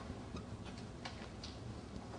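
Marker writing on a whiteboard: faint, irregular ticks and scratches as the tip strokes and taps the board, over a low room hum.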